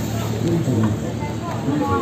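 Background voices in a busy cafe, faint and indistinct, over a steady low hum.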